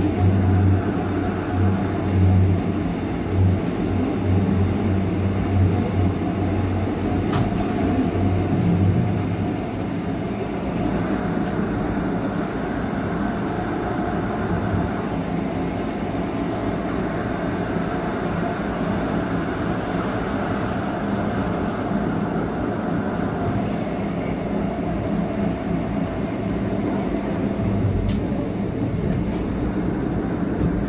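Electric train of the Bernina line running over the rails: a continuous rumble of wheels on track with a low hum that is stronger for the first nine seconds or so, then eases slightly. A sharp click about seven seconds in and another near the end.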